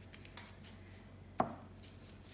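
A single sharp knock on a hard surface about one and a half seconds in, with a fainter tick about half a second in, like a small hard object set down on a tabletop.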